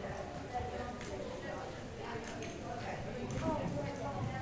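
Hoofbeats of a ridden pony moving over the indoor arena's surface, irregular sharp clicks, with indistinct voices talking in the background.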